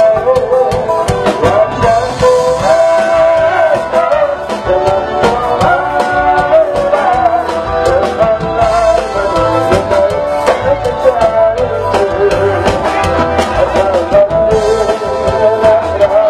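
Music with a singing voice over a steady drum beat.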